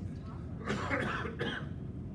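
A person coughing twice in quick succession, over a steady low room hum.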